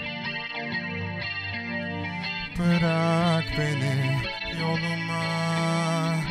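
Live band playing an instrumental stretch of a slow song, with an electric guitar picking a melody over the band.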